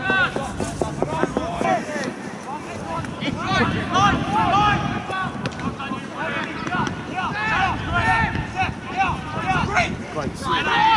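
Several voices shouting short calls back and forth during a football match, the shouts coming in clusters through the whole stretch over a low background rumble.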